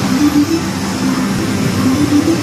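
Loud, steady din of a pachislot parlor: a dense wash of machine noise with a tune of short stepping notes running through it.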